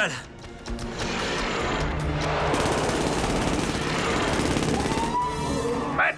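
Film soundtrack: a dense, sustained burst of rapid machine-gun fire lasting about four seconds, over dramatic music.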